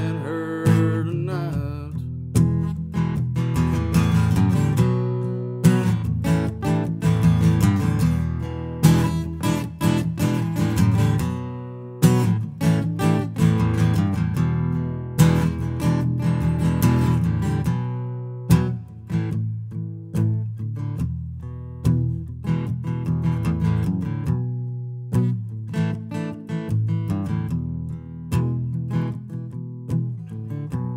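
A single acoustic guitar playing an instrumental break between sung verses, its strummed chords ringing on with no voice.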